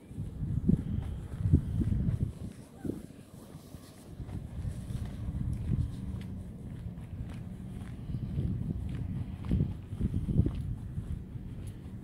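Footsteps of a person walking on asphalt, with an uneven low rumble of wind on the microphone that swells several times.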